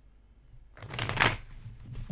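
A tarot deck being riffle-shuffled by hand: one quick riffle of cards about a second in, lasting under a second.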